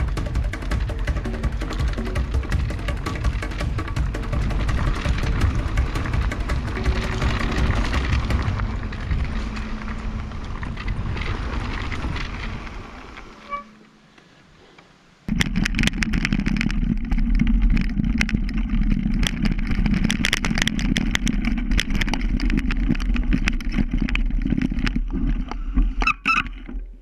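Background music that fades out over the first half, then a short near-silent gap. After it, a mountain bike is heard riding a rough trail: a loud, continuous rush of noise with rapid rattling and clattering of tyres and frame over the broken surface.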